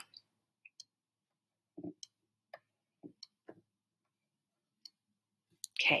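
A few faint, scattered clicks and light taps, about seven over four seconds, the strongest a dull tap about two seconds in, from a computer pointing device being worked while lines are drawn on screen.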